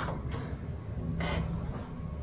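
Automatic gate being moved by hand with its motor's clutch released, freed from a jammed motor: a steady low rumble, with a short scraping hiss a little past a second in.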